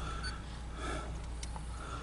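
Faint, steady low rumble of distant diesel freight locomotives running.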